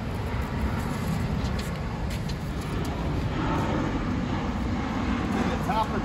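Steady low outdoor background rumble, even throughout, with no distinct event standing out.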